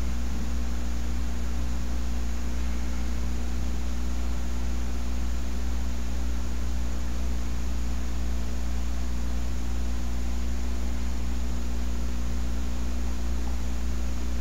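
Steady low electrical hum with a ladder of evenly spaced overtones over an even hiss: the background noise of the recording setup, with no other events.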